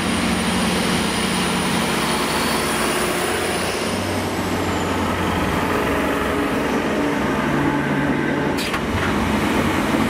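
Transport for Wales Class 769 bi-mode multiple unit running past along the platform, a steady engine and running-gear drone with a thin high whine that glides down and fades about four seconds in. A single sharp click comes near the end.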